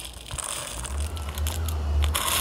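Whole dried cloves poured from a small plastic cup into a plastic measuring jug, landing as a dense stream of small clicks. A low hum comes in about a second in.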